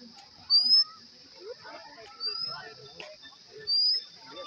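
A bird calling: a short, high, rising whistle repeated about every second and a half, three times, over a steady high-pitched hiss.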